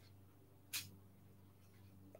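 Near silence: faint room tone with a low steady hum, broken by one short, faint noise just under a second in.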